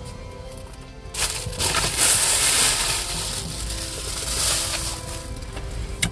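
Loud rustling and crinkling of food packaging, starting about a second in and lasting nearly five seconds. Faint music plays underneath.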